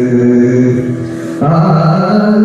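Yakshagana bhagavata singing: one voice holds a long note over a steady drone, then moves up to a new note about one and a half seconds in.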